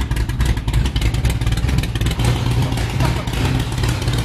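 Carbureted engine of a pro street Oldsmobile Starfire idling steadily, a loud low rumble close by.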